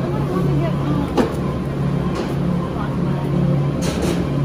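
Steady low hum from a supermarket's refrigerated dairy case, with a single sharp knock a little over a second in.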